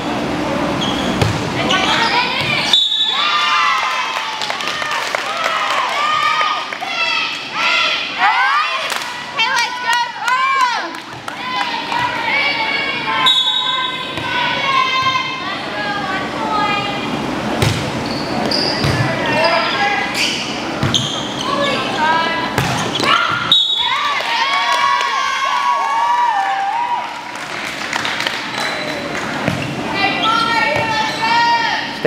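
Volleyball rally in a gym: several sharp slaps of the ball being served, passed and hit, amid near-continuous raised voices of players and spectators calling and cheering.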